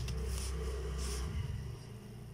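Plastic protractor and set square sliding over drawing paper as they are lined up, with two brief scrapes about half a second and a second in. A low steady hum underneath stops about a second and a half in.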